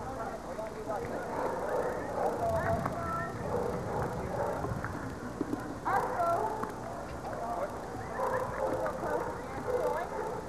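Indistinct voices of several people talking, with dog noises mixed in.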